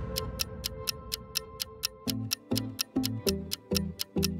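Countdown timer sound effect: clock-like ticks about four a second over background music, with low pulsing notes joining about halfway.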